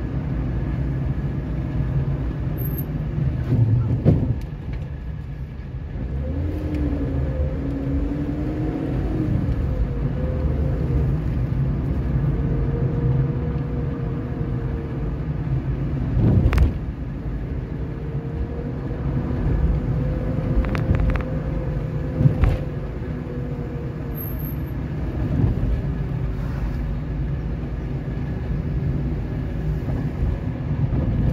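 A car driving, with steady engine and road rumble and an engine note that rises and falls. A few sharp knocks break through, the loudest about four seconds in and again about sixteen and twenty-two seconds in.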